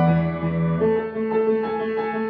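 Kawai grand piano played by hand: a low chord held, then a new chord struck just under a second in, with lighter notes moving above it.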